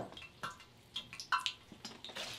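A few light, scattered clicks and knocks of kitchen containers and a mixing bowl being handled.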